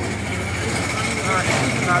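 A motor vehicle engine idling with a steady low hum, under general street noise.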